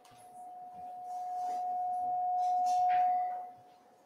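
A single steady mid-pitched ringing tone that swells over about three seconds and then fades away.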